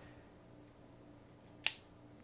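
A single sharp click late in the moment: the trigger of an FN 509C Tactical pistol resetting as it is let forward after a dry-fire break, with a short reset.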